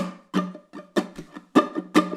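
Ukulele strummed in the rumba flamenco pattern, a quick run of strokes in which harder accented strokes stand out from softer ones, a chord ringing between them.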